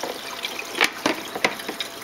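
Water running steadily through a Santa Monica SM100 algae scrubber, with a few sharp clicks and knocks about a second in as its lid is set back on.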